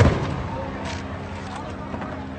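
A single loud bang right at the start that dies away within a fraction of a second, then a fainter short crack about a second in, over faint voices.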